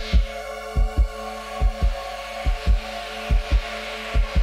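Suspense background music: a low heartbeat-like double thump repeating a little more than once a second over a steady held chord.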